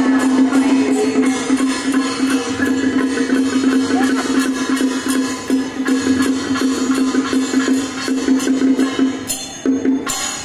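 Festival music with a steady, even percussion beat over a held note that does not change.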